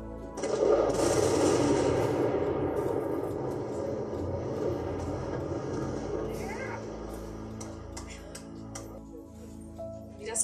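Explosive demolition charges in a concrete motorway viaduct's piers detonating. A sudden loud blast about half a second in is followed by a long noise that fades out over several seconds.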